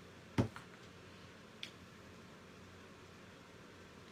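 A single sharp click about half a second in, then a faint tick about a second later, over quiet room tone.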